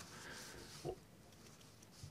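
Near silence: the chamber's faint room tone, with one brief, short low sound a little before halfway through.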